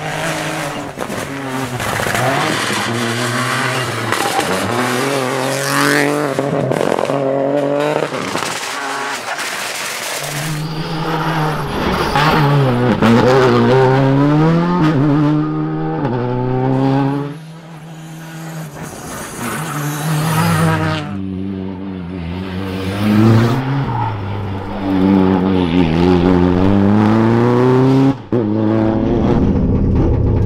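Rally car engines revving hard and falling back through gear changes as the cars brake and accelerate through tight bends, one car after another. The sound changes abruptly about halfway through and again near the end.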